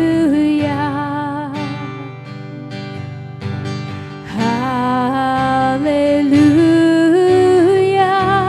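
Slow worship chorus: a long drawn-out sung "hallelujah" with vibrato over strummed acoustic guitar. It softens about two seconds in and swells again after the middle.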